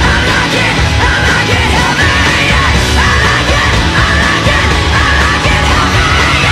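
Loud hard rock music with a heavy low end and a wavering lead line over it.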